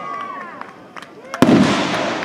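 Firework burst: a few sharp cracks, then a loud boom about a second and a half in that dies away slowly.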